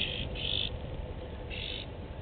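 Three short, high-pitched animal calls, spaced unevenly, over a low steady rumble.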